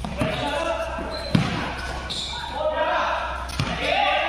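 A basketball being dribbled on a hard court under a metal roof, with players calling out to each other. A sharp thud of the ball about a second and a half in is the loudest sound.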